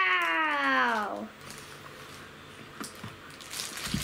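A child's long, drawn-out 'wooow' of delight, rising then falling in pitch and ending about a second in. Then faint plastic-bag rustling and a couple of light clicks as a die-cast toy car is slid out of its bag.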